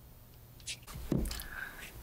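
Quiet room tone, then a few faint knocks and rustles from about halfway through.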